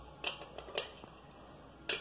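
Three light taps from a small hard object, two in the first second and one near the end, over faint room noise.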